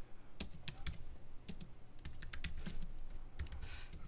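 Typing on a computer keyboard: an irregular run of keystrokes, some single and some in quick clusters.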